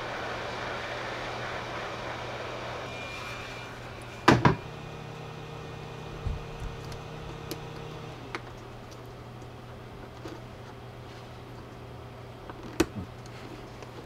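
A small heat gun blowing hot air onto the heat-shrink tubing over a quadcopter ESC: a steady airy hiss with a low hum that fades over the first four seconds. A single sharp click comes about four seconds in, a low hum lingers until about eight seconds in, then only faint scattered handling clicks.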